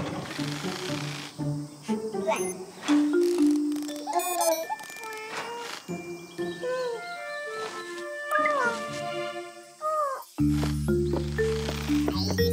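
Cartoon soundtrack: light background music with short sliding, beeping electronic notes in the middle, then a fuller music cue with a steady bass line coming in about ten seconds in.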